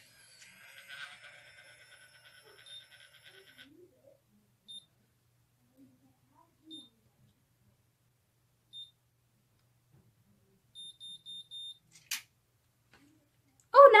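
Curl Secret automatic hair curler's motor whirring as it draws a lock of hair into its heated chamber, then single high beeps about every two seconds while it times the curl. It ends with four quick beeps, the signal that the curl is done, and a click.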